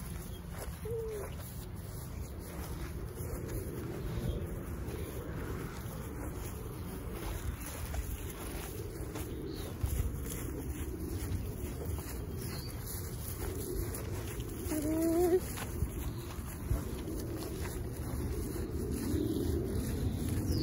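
Outdoor wind rumbling on the microphone, mixed with the soft rustle of footsteps through long grass. About fifteen seconds in there is a brief gliding vocal sound.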